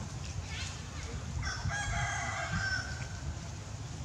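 A rooster crowing once, a single call of about a second and a half starting about one and a half seconds in, its pitch dipping slightly at the end.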